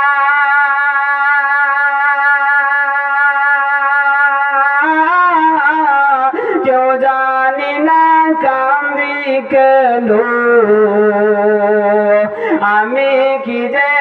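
A man singing a Bengali Islamic gazal into a microphone. He holds one long steady note for about the first five seconds, then moves into a wavering, ornamented melody with many pitch bends.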